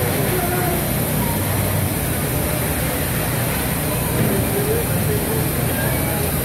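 Indistinct background chatter of many people over a steady low hum and a constant high hiss.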